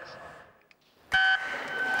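Electronic start signal for a swimming race: a hush, then a single short, loud beep a little over a second in, which starts the race. Its tone lingers faintly in the pool hall afterwards.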